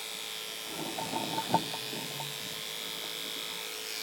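Electric hair clippers running with a steady hum and hiss. A few light clicks come about a second in, ending in one sharp tap.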